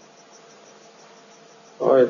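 A short pause in video-call speech: faint background hiss with a low steady hum and a faint, evenly repeating high-pitched pulsing; a man's voice starts again near the end.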